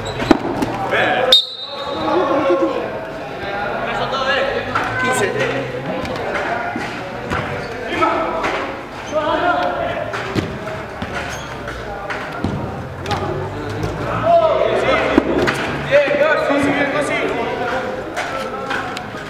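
Indoor five-a-side football in a reverberant hall: players' voices calling out over repeated thuds of the ball being kicked and bouncing on artificial turf. There is a sharp bang about a second and a half in.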